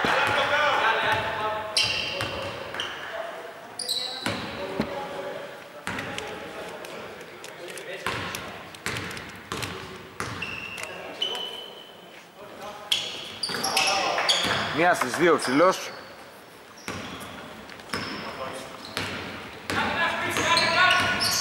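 A basketball bouncing on a hardwood court as a player dribbles at the free-throw line, the bounces echoing through a large, near-empty arena, with a few brief high squeaks among them.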